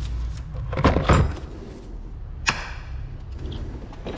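Work noise in a car's engine bay: a heavy, muffled knock about a second in, then a single sharp click halfway through, over a steady low hum.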